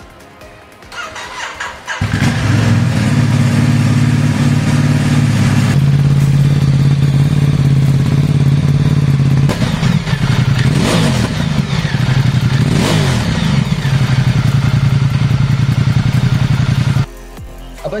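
Ducati XDiavel 1262's Testastretta DVT L-twin engine starting up about two seconds in and idling loudly, the idle settling to a lower, steadier pitch a few seconds later. Two quick throttle blips, each rising and falling in pitch, come about ten and thirteen seconds in. The engine is switched off suddenly near the end.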